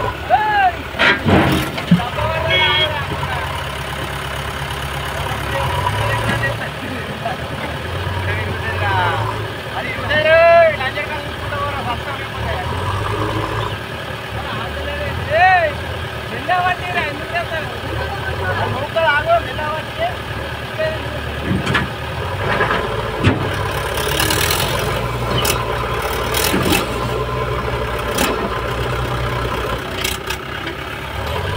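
Diesel engines of a Mahindra 575 DI tractor and a backhoe loader running steadily under heavy load, with the tractor straining hard enough on its loaded trailer that its front wheels lift. Voices call out several times over the engines.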